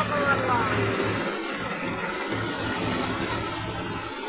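Tractor-powered paddy hulling machine running, with a steady low engine drone. A brief high-pitched voice calls out right at the start.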